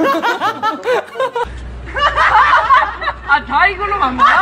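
A young man laughing hard in quick high bursts, mixed with other voices talking and laughing. About a second and a half in, the sound cuts to another laughing clip with a low hum underneath.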